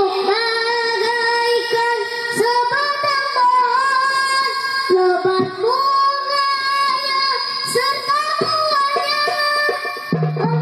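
A boy singing into a microphone over a PA, holding long notes with ornamented slides between them.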